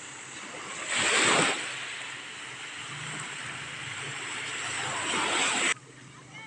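Small waves breaking and washing up over sand at the water's edge, with one loud surge about a second in, then a building wash that stops abruptly near the end.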